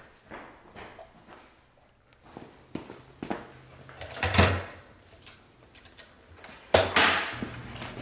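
Knocks and clatters of drawers and cupboard doors opened and shut in a hurried search, with two louder bangs about four and seven seconds in. A low steady hum starts near the end.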